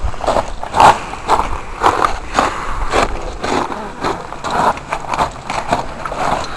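Footsteps crunching on loose desert gravel, about two steps a second, as people walk up a dry wash.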